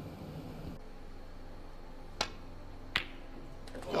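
Two sharp clicks of snooker balls, under a second apart, over a low steady hum.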